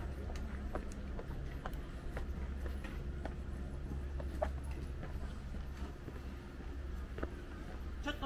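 Footsteps of someone walking down stone steps and along a paved path, each step a sharp click at an uneven pace of about one every half second to a second, over a low steady hum.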